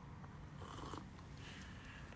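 Faint slurping sips of coffee from a white ceramic cup. There are two short, soft sips, one about half a second in and another about a second later.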